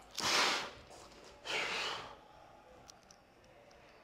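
A man's two sharp, forceful breaths, each about half a second long and a second apart, as he tenses into a flexing pose.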